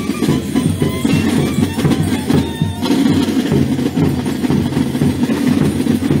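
Gilles carnival drum band (batterie) of drums playing the Gilles' dance rhythm, loud and continuous.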